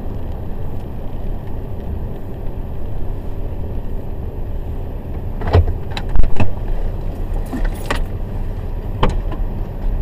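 Car cabin road and engine noise as the car slows down: a steady low rumble, with a handful of short clicks and knocks a little past the middle and once more near the end.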